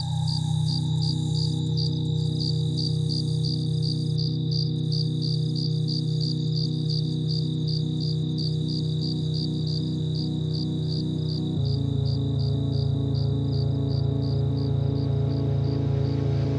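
Ambient intro of a liquid drum and bass track with no beat: a held synth pad and bass chord, with steady cricket-like chirping layered over it at about three chirps a second. About twelve seconds in, the chord changes and the bass drops lower.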